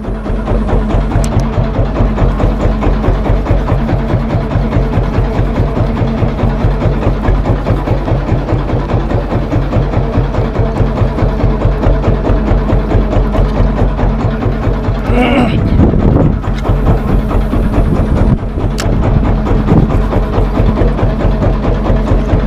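Background music with a steady, repeating drum beat.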